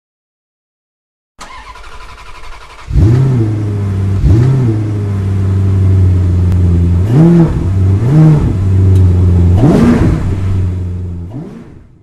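A car engine comes in about a second and a half in, then idles with five quick revs that rise and fall, and fades out near the end.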